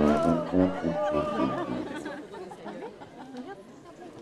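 A street band with a tuba plays its last notes for about the first second and a half. The music then stops and the crowd's chatter carries on.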